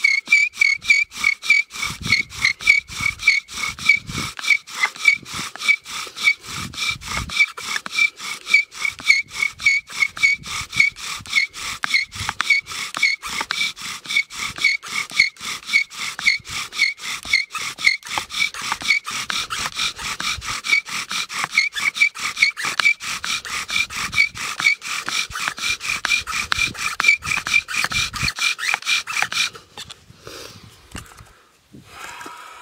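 Bow drill running: a yucca-stalk spindle squeaking in the notch of a cedar fireboard with each stroke of the bow, a fast, even back-and-forth of about three strokes a second, as the drilling fills the notch with wood powder. The strokes stop abruptly near the end.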